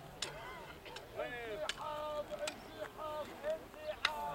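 Voices talking, too unclear to make out words, from about a second in, with a few sharp clicks scattered through.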